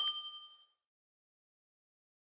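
A single bright, bell-like ding sound effect at the very start, a chime with high overtones that dies away within about half a second.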